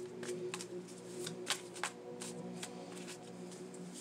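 A tarot deck being shuffled by hand, overhand, the cards slapping and clicking against each other in an irregular patter of about two or three clicks a second.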